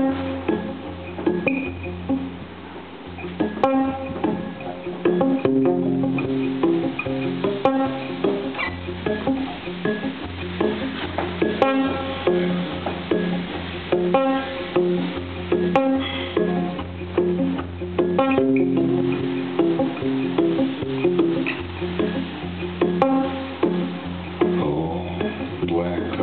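Guitar playing a song's instrumental introduction, low notes held under repeated higher picked notes, with a sharp tap every few seconds.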